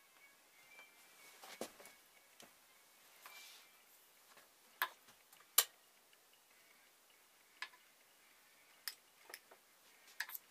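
About half a dozen sharp, scattered clicks and light knocks of workbench gear being handled, as an insulated probe on a long plastic pipe is moved into place over the setup. The loudest click comes a little past halfway.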